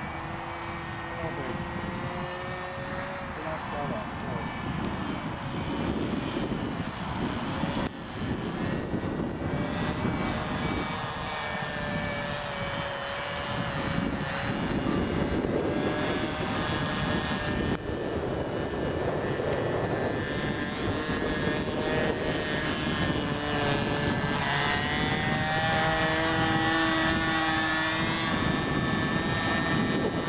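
A radio-controlled model autogyro flying overhead: its nose propeller and motor drone, the pitch wavering up and down as it flies. Gusty wind buffets the microphone underneath.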